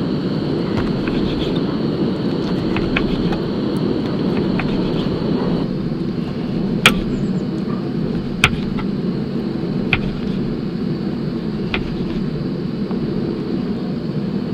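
Open wood fire under a cauldron of heating wine: a steady low rumble with sharp pops from the burning wood, four of them a second or two apart in the later part. At the start, light clicks of a knife slicing grapefruit on a wooden board.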